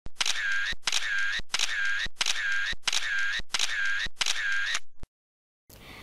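A repeated mechanical click-and-whir sound effect, seven identical strokes at about one and a half a second. Each is a sharp click followed by a short rasping whirr. The strokes stop about five seconds in.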